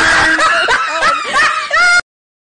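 A woman laughing hard in high, squealing peals. The sound cuts off suddenly at the very end.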